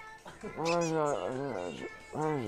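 A man's drawn-out whining groan, held and then wavering in pitch for over a second: the grumpy protest of someone being dragged out of sleep by a tugged blanket.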